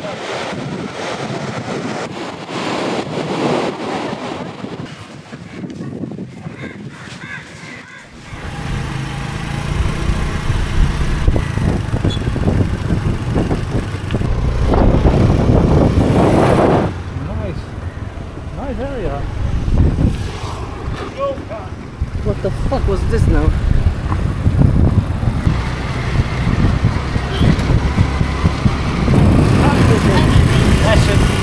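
A motor scooter riding along, with its engine running and wind rushing on the microphone; this starts suddenly about eight seconds in and stays loud to the end. Before it there is a quieter stretch of outdoor background sound.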